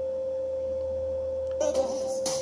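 One steady, unwavering mid-pitched tone with a faint low hum beneath it, like an electronic whine in the recording.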